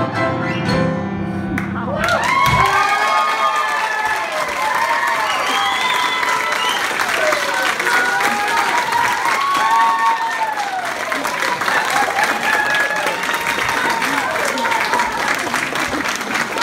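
Piano duet finishing its last notes, which break off about two seconds in. An audience then applauds and cheers, with many voices whooping over the clapping.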